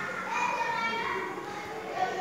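Indistinct children's voices talking and calling, with no clear words.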